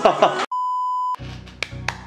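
A single steady electronic beep, one high pure tone held for under a second, then cut off. It is followed by a low hum with two sharp clicks.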